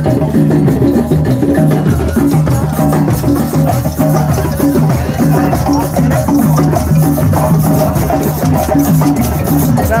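Drum circle: many hand drums and other percussion played together in a steady, continuous groove.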